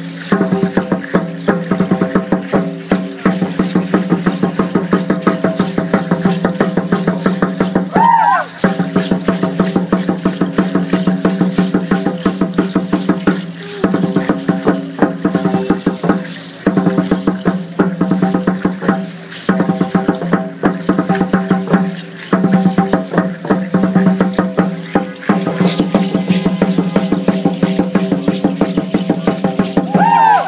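Ceremonial Aztec dance drumming: a fast, steady beat on a large upright drum under a held pitched tone, breaking briefly every few seconds. A short gliding whistle-like call sounds about eight seconds in and again at the end.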